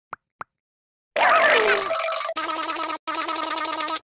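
Two short plops, then cartoon sound effects: a loud pitched sound falling in pitch, followed by a buzzing held tone with a brief break in it.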